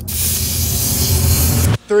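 Compressed air hissing from a pneumatic air hammer and its hose for nearly two seconds, then cutting off sharply.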